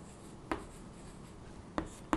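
Chalk writing on a chalkboard: faint scraping strokes with two sharp taps of the chalk against the board, one about half a second in and one near the end.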